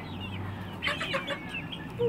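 Chickens clucking and peeping, with several short, falling high chirps scattered through, a cluster of them about a second in.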